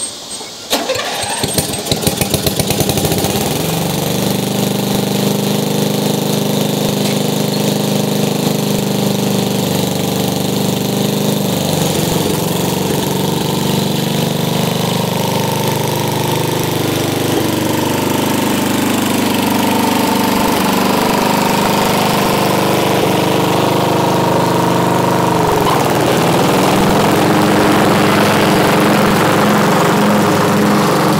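MTD38 lawn tractor engine being cranked and catching within about three seconds, then settling into a steady run. Its note shifts about midway and again near the end.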